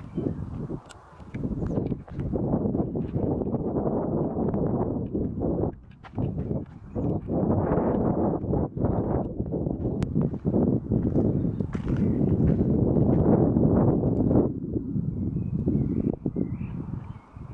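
Wind buffeting the phone's microphone in gusts, with walking footsteps over rock and grass, played back at double speed.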